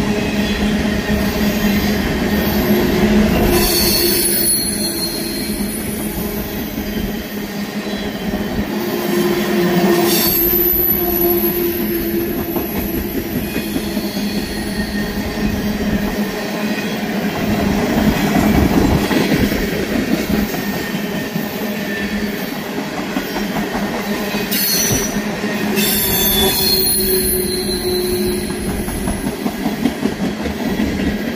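A freight train of loaded tank cars rolling past close by, with a steady rumble of steel wheels on rail. High-pitched wheel squeals come and go several times: near the start, about a third of the way in, and near the end.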